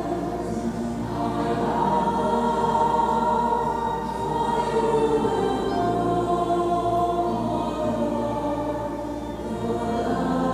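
A group of voices singing a hymn together in long held notes.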